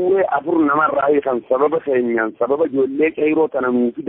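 Speech only: a voice talking without pause, as in a news report.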